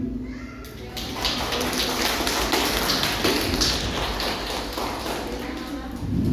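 A group of people clapping, starting about a second in and tapering off near the end.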